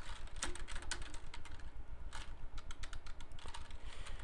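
Typing on a computer keyboard: an irregular run of key clicks as a word is typed in pinyin.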